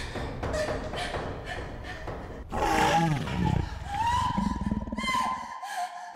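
Laughter, then about two and a half seconds in a loud roaring cry that falls in pitch, followed by a long high-pitched scream that cuts off abruptly near the end.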